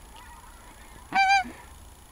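A single short, high goose honk about a second in, with clear ringing overtones.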